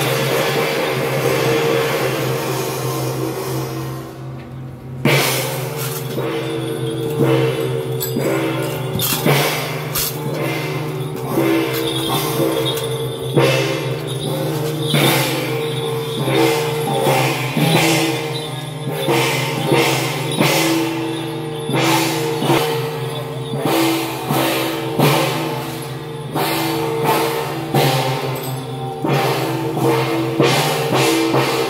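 Taiwanese temple-procession music: drums and cymbals struck in a steady rhythm over sustained melodic tones. The percussion drops back briefly about four seconds in, then comes back with a loud strike.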